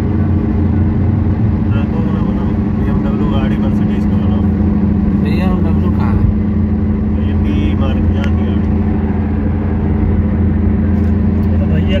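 Steady low hum and road noise inside a moving car's cabin, with faint voices over it.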